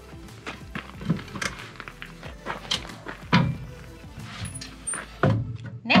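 Folding metal RV entry steps being pulled out and unfolded: a string of clanks and knocks, the loudest about three and five seconds in, over background music.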